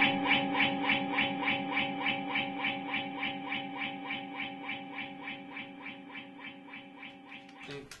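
Electric guitar, Telecaster-style, played through a Line 6 DL4 delay pedal: a held note rings under a rapid stream of repeating echoes, about four a second, fading gradually. The sound cuts off abruptly just before the end.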